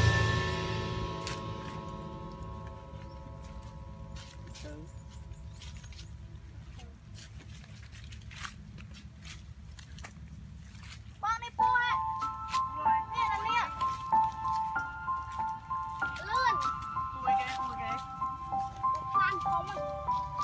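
Background music fading out over the first few seconds, then a quiet stretch of low hum and scattered faint clicks. From about eleven seconds in, a melody of sustained notes stepping between pitches comes in, with voices over it.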